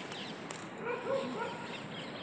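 A few short animal calls, each quickly rising and falling in pitch, come in a quick run about a second in, over a steady outdoor background hiss.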